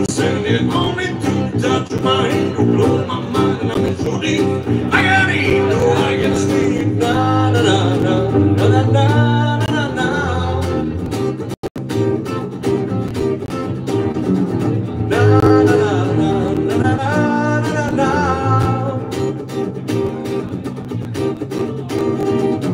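Two acoustic guitars strummed and picked together, with a singer's voice in two sung phrases. The sound drops out for an instant about halfway through.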